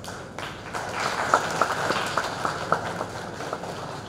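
Applause from the audience, a crowd clapping. It swells up over the first second, with several sharper individual claps standing out, and then dies down toward the end.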